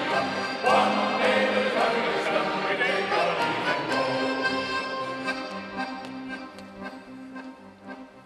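Accordion and violin playing an instrumental interlude of a sea shanty between sung verses, with sustained chords and melody, the playing dropping away in the last couple of seconds.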